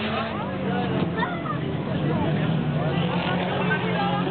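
Engines of several autocross race cars running hard together on a dirt track, a steady low drone under pitches that rise and fall as they rev and shift. Spectators' voices are mixed in.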